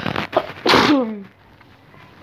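A girl coughs once, hard, about two-thirds of a second in: a sudden sharp burst that trails off in a short falling voice.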